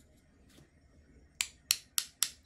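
A paintbrush tapped sharply against the handle of a second brush, three crisp clicks in quick succession starting about halfway through, flicking a splatter of neon pink watercolour onto the painting.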